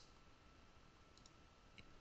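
Near silence with faint computer mouse clicks, twice, about a second in and near the end, the second bringing up a right-click menu.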